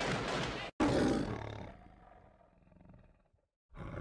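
The MGM lion's roar, chopped up by the edit: a roar cut off abruptly just under a second in, a second roar fading away over about two seconds, a moment of dead silence, then another roar starting near the end.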